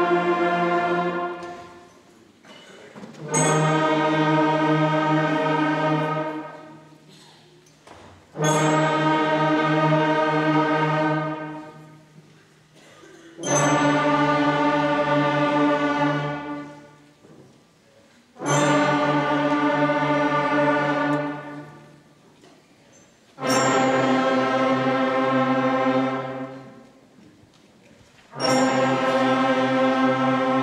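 A large sixth-grade beginning concert band playing long unison tones from its first five notes. A held tone ends about a second in, then six more follow, each held about three seconds with a short gap between, one starting roughly every five seconds, and the pitch changing from one tone to the next.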